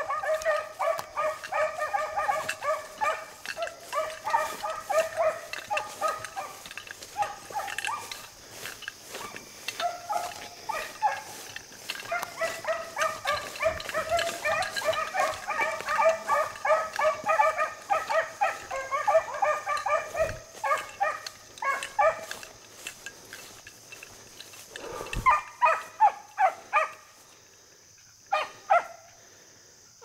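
Beagle hounds baying on a rabbit's scent line in a field trial: rapid, repeated pitched calls, dense for the first twenty seconds or so, then broken into short bursts and dying away near the end.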